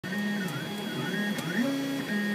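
XYZ da Vinci 3D printer printing: its stepper motors whine as the head and bed move, the pitch holding for a moment and then sliding or stepping to a new note with each change of speed and direction. A couple of faint ticks come through.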